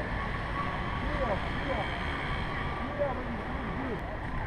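Steady rumbling wind on the microphone of a camera riding on a moving bicycle, with faint voices of people nearby.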